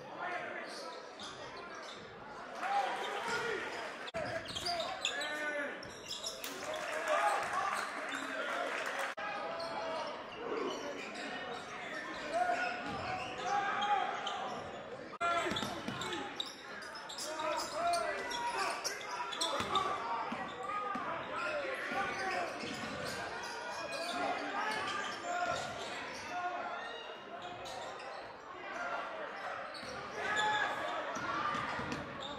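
Live gym sound of a basketball game: a ball bouncing on the hardwood court among indistinct shouts and calls from players and spectators, echoing in the gymnasium.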